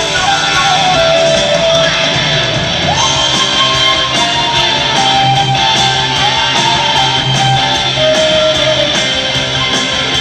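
Live rock band playing, with a flute carrying a gliding melody over guitar and drums.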